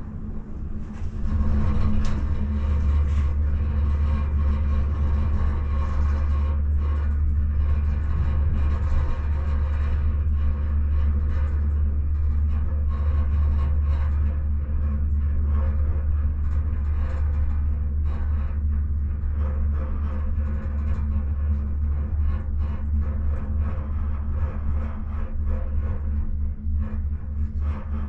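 Gondola cabin riding along its cable: a steady low rumble with a hum and light rattles, growing louder about two seconds in and then holding.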